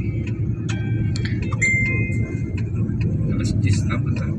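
Steady low rumble of a car driving along a road, heard from inside the cabin, with faint scattered ticks and one brief high thin tone near the middle.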